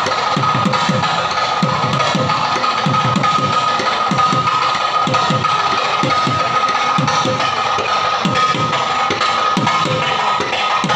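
Live Kerala temple percussion: a barrel-shaped drum and chenda drums played in a quick, dense rhythm. Low strokes come several times a second, each falling slightly in pitch, over a steady high ringing tone.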